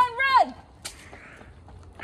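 A high-pitched voice holds a long drawn-out call that breaks off about half a second in, followed by a single sharp click and then quiet outdoor background.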